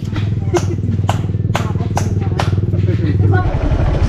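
A small engine idling steadily, with five or six sharp knocks over the first two and a half seconds. Near the end the sound changes to a motorcycle riding, its engine a lower, rougher rumble.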